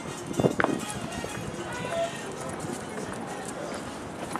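City street ambience with indistinct voices of passers-by. A few short, louder sounds come in the first second, then a steady background hum with faint scattered clicks.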